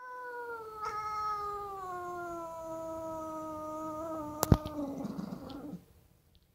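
A cat giving one long, drawn-out meow that slowly falls in pitch and turns rougher near the end. A single sharp click comes about four and a half seconds in.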